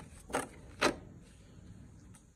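Sheets of paper being handled, with two short crisp rustles, one about a third of a second in and one just under a second in.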